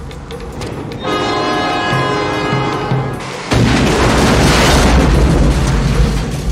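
A large explosion goes off about three and a half seconds in, its roar of fire carrying on loud to the end, over a dramatic action film score. Before the blast, a sustained horn-like chord holds for a couple of seconds.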